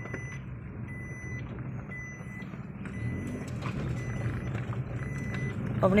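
A car driving, heard from inside the cabin: a steady low engine and road rumble, with a short high electronic beep repeating about once a second.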